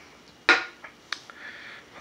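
A single sharp knock about half a second in, then two faint clicks: small hard objects being handled on a tabletop.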